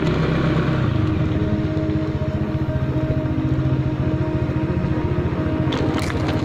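Motorcycle engine running as it is ridden along a narrow road, a fast even putter of firing pulses; the engine note drops about a second in, then holds steady.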